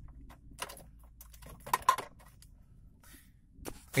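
A few scattered light clicks and brief metallic rattles, a small cluster about halfway through, from the ignition key and steering column being handled, over a faint low hum.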